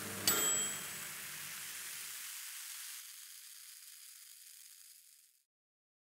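A microwave oven's timer dings once, a short high ring about a third of a second in, followed by a hiss that fades away to silence.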